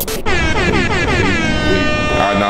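An editing sound effect over a title graphic: a sharp hit, then a buzzy, many-overtoned tone that glides down in pitch and levels off into a steady note.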